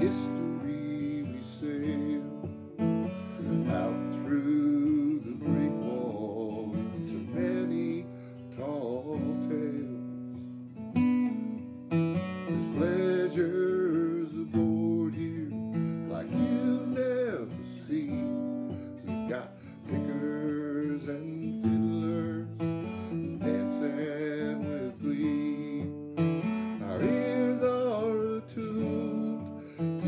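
An old Martin acoustic guitar strummed, with a capo on the neck, accompanying a man singing.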